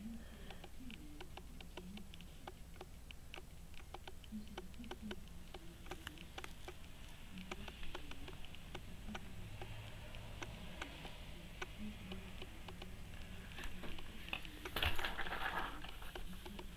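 Handling noise of a handheld camera: faint, irregular small clicks and rustles over a low steady hum, with a louder rustle near the end as the camera is swung.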